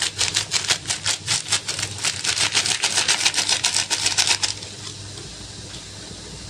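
A plastic sachet of chicken stock powder being shaken and flicked over a wok: a fast run of crinkly ticks, many a second, as the powder pours out. It stops about four and a half seconds in, leaving a faint steady hum.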